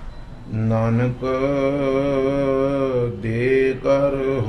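A man's voice chanting a Sikh devotional chant into a microphone: long held notes with a slight waver. It starts about half a second in, with two brief breaks.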